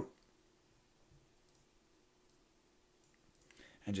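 A few faint computer mouse clicks, spaced irregularly, over quiet room tone.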